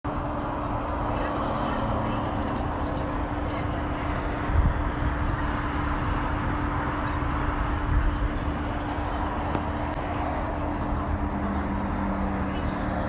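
Steady roar of highway traffic with a steady low hum running underneath. There are two brief low thumps, about four and a half and eight seconds in.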